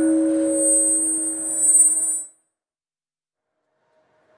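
Steady electronic tone from the hall's sound system, several pitches held at once, which cuts off abruptly about two seconds in to dead silence as the audio drops out.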